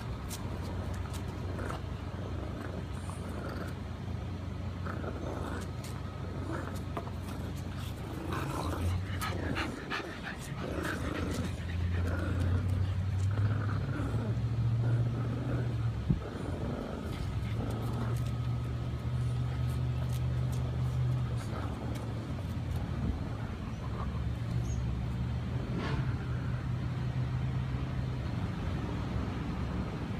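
French bulldogs growling and grunting as they tug at a rubber toy, busiest a third of the way in, over a steady low mechanical hum. A single sharp knock comes about halfway through.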